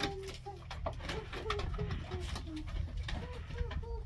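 Dog whining in a quick series of short, high-pitched whimpers, about three or four a second, while it works its nose at the find in the woodpile.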